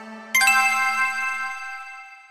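A single bright chime sound effect struck about a third of a second in, ringing and slowly fading, over the fading tail of an earlier lower plucked note.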